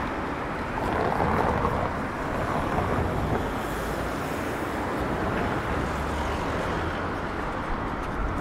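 City street traffic: a steady wash of car and road noise at a busy intersection, swelling a little about a second in.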